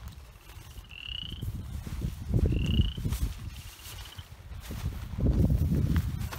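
Three short, rising, high-pitched trilled calls from a small animal, about a second and a half apart. Gusts of wind buffet the microphone with a low rumble, loudest in the middle and near the end.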